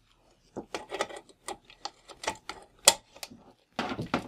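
Irregular small clicks and knocks of a 3-pin DMX (XLR) cable and its metal connector being handled and fitted at the light fixtures' connector panels, one sharper click near three seconds in.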